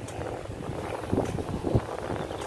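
Low wind rumble on the microphone, with two soft footsteps on a paved path a little over a second in.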